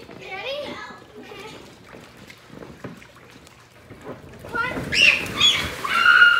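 Children talking and shouting around a swimming pool, then a splash of someone falling off a float into the water near the end, with loud high-pitched shrieks.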